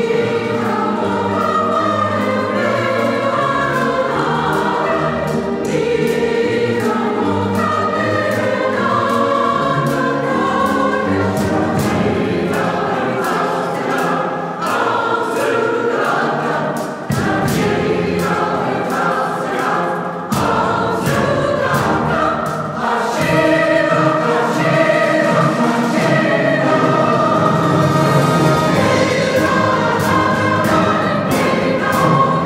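Large mixed choir singing with a symphony orchestra accompanying, strings among them; the music runs continuously, with a few brief dips in the middle.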